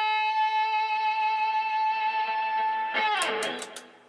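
Electric guitar through a VVT X-40 6L6 all-tube head on its overdrive channel with the full drive boost on, holding one long distorted note. About three seconds in the note is cut off with a short scratchy noise.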